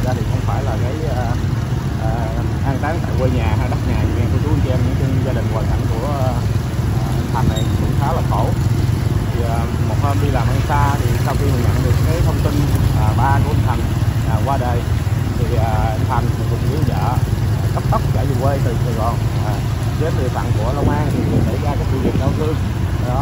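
Motorbike engines running steadily at low speed, with voices talking indistinctly over them throughout.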